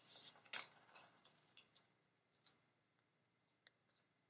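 Faint rustling and crinkling of the backing on a small adhesive foam mounting square as it is handled and peeled, loudest in the first second, followed by a few light ticks.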